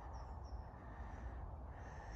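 Faint outdoor background: a steady low rumble with a few short, faint high chirps from birds.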